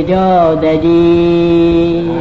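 A Burmese Buddhist monk chanting in a low, steady voice: a short dip in pitch just after the start, then one long held note.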